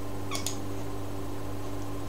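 A steady low electrical hum, with one brief high-pitched chirp about half a second in.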